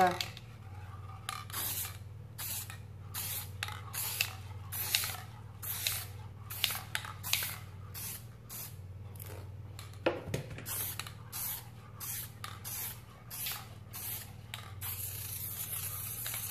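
Aerosol can of clear gloss spray hissing in many short bursts, about one and a half a second, ending in a longer continuous spray near the end. A single knock about ten seconds in.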